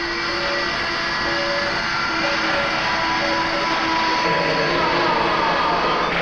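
Automated machine tools and robot loaders running, a blend of steady mechanical whines at several pitches that come and go. About five seconds in, a tone slides downward, and a lower hum joins shortly before it.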